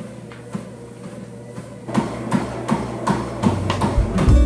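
Treadmill running with a steady low motor hum; about halfway through, footfalls on the moving belt start, about three a second, as the runner picks up pace.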